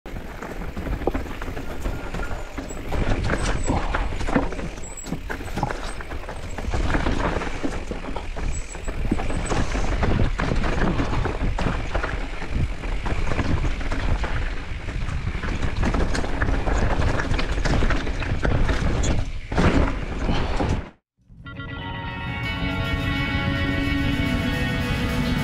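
Mountain bike (a Specialized Status 140) rattling and clattering down a rocky trail, a dense jumble of knocks from tyres striking rock and the bike shaking. Near the end it cuts off abruptly and music begins.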